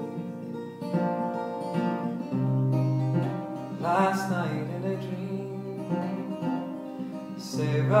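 Acoustic guitar playing a slow ballad accompaniment, with a man's voice singing a drawn-out phrase about halfway through and coming back in just before the end.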